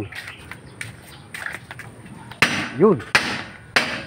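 Two loud hammer blows on metal, about a second and a half apart.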